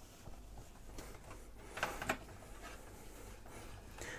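Faint rubbing and light ticks of a cable being pushed through a gap in a metal PC case, with one brief, sharper scrape about two seconds in.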